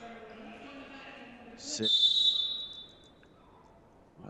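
A referee's whistle blows once, about two seconds in: one shrill, steady blast of about a second that trails off. Before it a man's voice is faintly heard in the hall.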